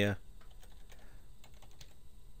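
Typing on a computer keyboard: a short run of light, separate keystrokes.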